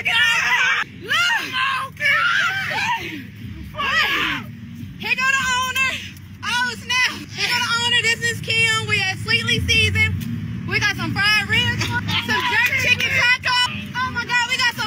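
Excited women's voices shouting and squealing in quick bursts, over a steady low rumble.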